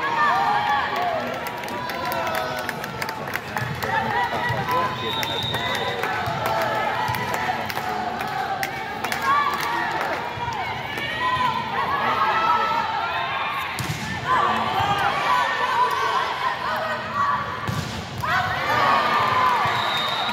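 Crowd chatter and cheering at a volleyball match, many voices overlapping at a steady level, with two sharp volleyball hits, one about two-thirds of the way in and one near the end.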